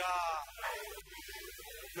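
A man speaking Spanish holds one syllable in a drawn-out, slightly falling tone, then pauses. Faint scattered sound fills the pause until he goes on talking.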